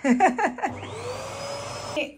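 Vacuum cleaner switched on about two thirds of a second in, its motor spinning up with a rising whine that settles into a steady run, then cut off at the end.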